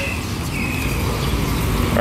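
Street traffic: a car passing close and motorcycles approaching, a steady low engine and road rumble that swells slightly toward the end.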